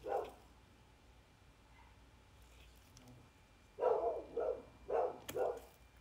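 A dog barking in the background: one short bark at the start, then four short barks in two quick pairs about four and five seconds in.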